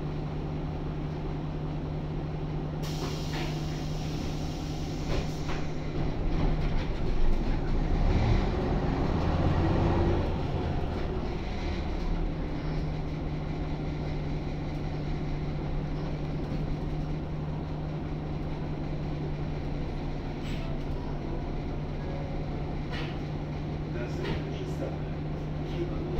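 Interior sound of a 1998 Jelcz 120M city bus with its WSK Mielec SWT 11/300/1 six-cylinder diesel and FPS Tczew four-speed gearbox: a steady engine hum with rattles from the body, growing louder and changing pitch for several seconds in the middle as the bus works harder, then settling back to a steady hum.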